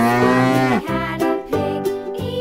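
A cow mooing: one long call that rises slowly and ends with a sharp drop in pitch just under a second in, with children's music underneath.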